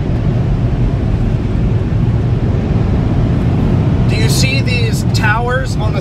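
Car wash dryer blower fans running, a steady, loud, deep rush heard from inside the car's cabin.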